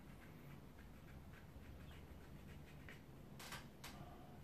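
Near silence with faint, light ticks of a thin rigger brush flicked up and down on wet watercolour paper, and two louder clicks near the end.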